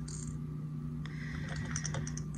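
Quiet room tone with a steady low hum and a few faint light ticks and rustles as a gloved hand picks up plastic fishing lures.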